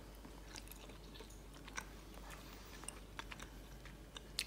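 A person chewing gum close to the microphone: faint, irregular small wet clicks of the mouth.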